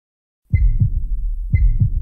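Heartbeat-like double thump, lub-dub, about once a second over a steady low rumble, with a short high ping on each first beat. It starts about half a second in.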